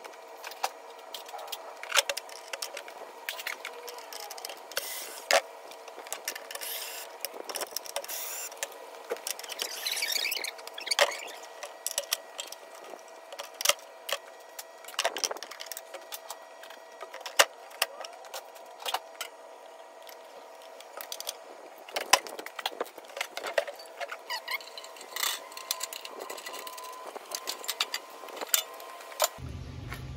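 Sped-up tool work on a generator: a dense run of sharp metallic clicks, clinks and rattles as the fuel tank's bolts are driven out with a cordless drill and socket and the tank is lifted off. The fast playback makes it sound thin and high.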